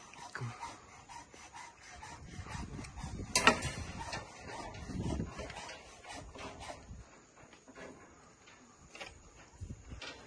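Footsteps, scuffs and rustling of a handheld phone moving over a concrete and rebar slab, with scattered small clicks and one sharp click about three and a half seconds in.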